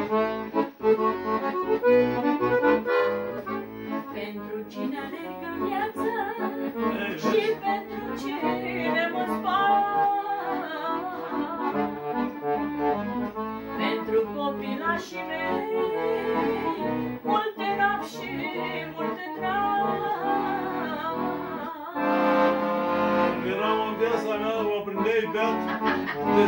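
Two piano accordions playing a folk tune together, with a woman singing along.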